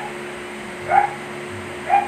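A dog giving short, rising yips or whimpers, about once a second, over a steady low hum.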